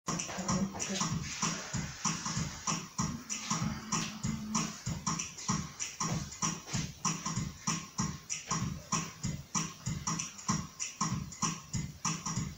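A programmed drum rhythm from a digital keyboard, repeating evenly at about two and a half beats a second, each a low thump topped by a crisp high tick, with no melody over it. A short held low note sounds for about a second and a half, about three seconds in.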